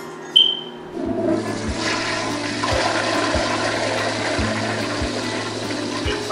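A brief high-pitched squeak a moment in, then a toilet flushing: a steady rush of water that lasts several seconds.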